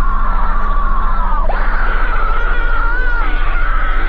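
A woman's long, high scream, held on one pitch, breaking off briefly about a second and a half in and then rising again and carrying on.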